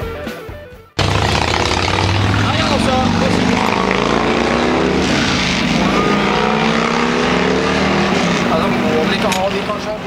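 Guitar rock music fading out, then an abrupt cut about a second in to loud location sound: voices talking over a steady low mechanical hum.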